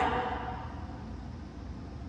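Quiet room tone with a steady low hum, as the echo of a spoken count dies away at the start.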